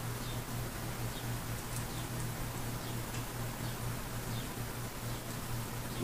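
Quiet room tone: a steady low hum with faint hiss, and a few faint light ticks as the pages of a book are handled.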